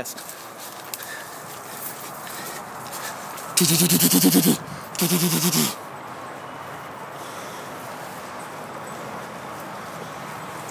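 Two loud, hoarse, drawn-out cries about four and five seconds in, the first about a second long and the second shorter, over steady outdoor background noise.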